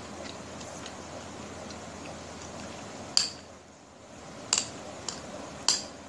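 A metal spoon clinking against a porcelain bowl three times, a little over a second apart, each a short bright ring, with a fainter tap between the last two.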